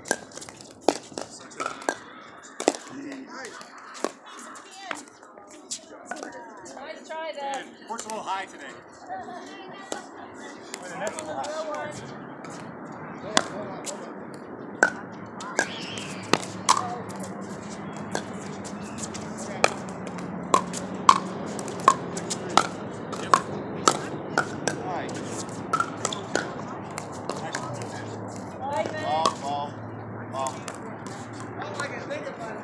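Pickleball paddles striking a hard plastic ball: a long series of sharp pops at uneven intervals through several rallies. Indistinct voices are heard under them.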